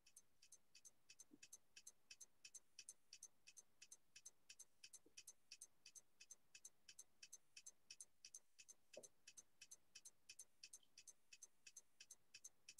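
Faint, steady clicking on a video-call audio line, about three clicks a second, its origin unclear to those on the call.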